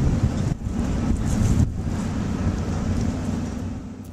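Wind buffeting the camera's microphone: an uneven low rumble that swells and dips.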